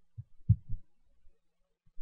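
Three soft, low thumps within the first second.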